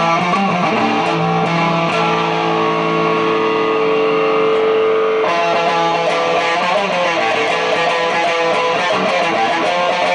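Electric guitar played through an amplifier, improvised. A chord rings out and is held for a few seconds, then about five seconds in the playing changes abruptly to busier chords and notes.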